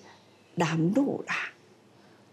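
Speech only: a woman says a short phrase of a few syllables from about half a second in to about a second and a half in.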